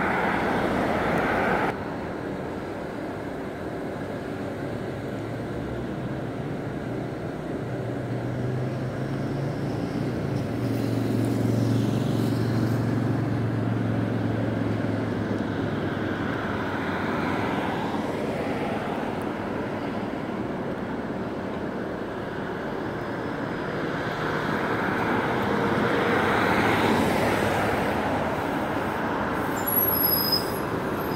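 Road traffic going by: a pickup truck passes at the start, then a steady hum of cars. Near the end a Gillig diesel transit bus approaches and pulls in to the curb, its engine growing louder.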